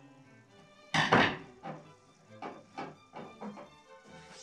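Tools and a small regulator box being set down on a wooden workbench: a sharp double thunk about a second in, then several lighter knocks and clatters as things are handled. Faint background music runs underneath.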